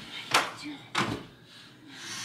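Two sharp knocks, about two thirds of a second apart, the first the louder.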